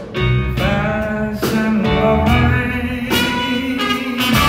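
Live band playing a song at concert volume: electric guitar, bass and drums under a lead vocal sung into a microphone.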